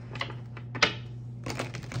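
A deck of round tarot cards being shuffled in the hands: a few sharp card clicks, the loudest a little under a second in, then a quick run of clicks near the end.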